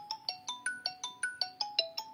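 Phone ringtone: a quick melody of short, bell-like notes at shifting pitches, about five or six a second.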